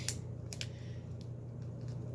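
A sticker being peeled off a plastic shampoo bottle: a few light clicks from fingers on the plastic and a faint soft rasp as the adhesive tag comes away.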